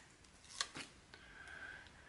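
Faint rustling of a paper sticker sheet being picked up and handled, with two or three light clicks about half a second in.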